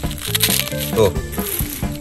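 Crispy fried fish crunching and crackling as a stone pestle crushes it into chili sambal in a stone mortar, heard over background music with a steady beat.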